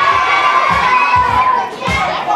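A crowd of children cheering and shouting together in reply, high voices held in one long yell, with a few low thumps underneath.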